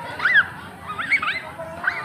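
Children's high-pitched shrieks: three short cries that swoop up and down in pitch, the first the loudest.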